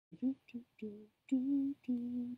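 A woman humming five short, level notes in a row, the last two held a little longer.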